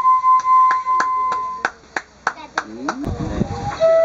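Shinobue (Japanese bamboo transverse flute) holds one long note that stops a little under halfway through. Over it comes a run of sharp clicks, about three or four a second, and near the end voices come in as a lower flute note begins.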